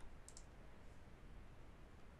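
Near silence with room hiss, broken by one faint, brief computer mouse click about a quarter second in.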